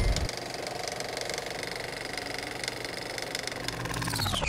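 Film-projector sound effect: a rapid, even mechanical clatter with a steady high whine, starting about a quarter second in as the previous loud sound drops away.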